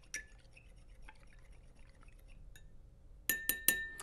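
A metal teaspoon stirring hot coffee in a glass to dissolve the sugar, with faint soft clinks, then about four quick, sharp taps of the spoon against the glass near the end, each with a brief ring.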